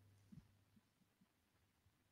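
Near silence: a gap in the audio between stretches of speech.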